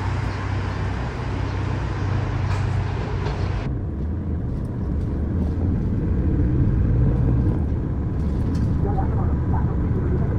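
A Mercedes-Benz city bus pulling in at a stop, its engine running over street traffic noise. A little under four seconds in the sound turns muffled: the steady low drone of the bus engine heard from inside the cabin while riding.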